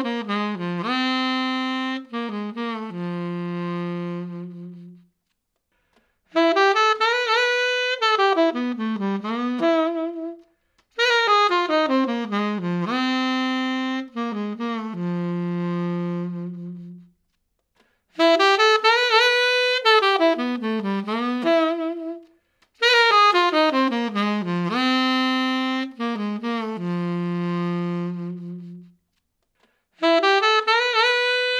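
P. Mauriat tenor saxophone played solo and picked up by ribbon microphones. The same short passage is played over and over, with brief pauses between phrases: a falling run that ends on a long low held note, alternating with a phrase that rises and falls.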